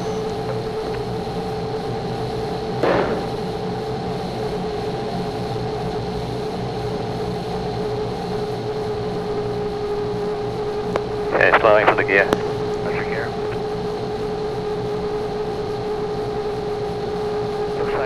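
Steady cockpit drone inside SpaceShipOne as it glides in unpowered with its gear down, carrying a constant hum-like tone. It is broken by short bursts of radio or intercom voice about three seconds in and again around eleven to thirteen seconds.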